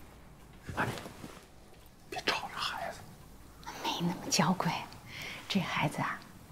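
Hushed whispering voices in short phrases with pauses, starting about a second in.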